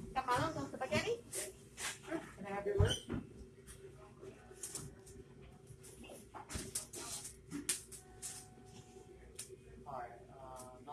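A person's voice briefly in the first few seconds, then faint scattered clicks and taps over a steady low hum of a quiet shop interior.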